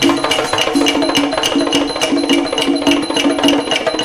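Thai classical ensemble playing a melody in repeated mid-pitched notes over an even beat of small, ringing metal cymbal strokes, about four or five a second. The deep drum strokes drop out in this stretch and come back just after.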